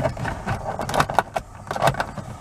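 The plastic storage box under a Lexus GS300's radio is slid and pushed into its dash slot, giving a run of light plastic clicks, knocks and rattles, the loudest about a second in and near the end.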